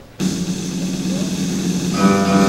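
A church worship band comes in all at once with a held chord: a steady low note under a bright wash, starting suddenly just after the start and sustained.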